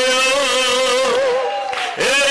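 A man's voice in drawn-out, chant-like prayer, each note held long with a wavering pitch, thinning out briefly near the end.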